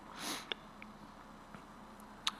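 A man's single short sniff through the nose, followed by a faint click and a couple of fainter ticks.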